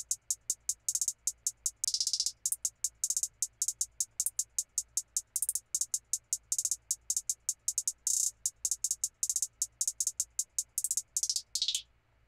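Programmed closed hi-hat loop in a trap beat, playing alone: crisp hits at about five a second with quick rolls in places, and a roll that falls in pitch near the end before it stops.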